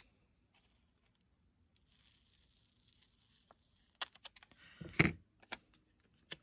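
Small scissors cutting through a sticker sheet with a faint papery hiss, then a few light clicks and a sharper knock about five seconds in as the scissors are set down and the sheet is handled.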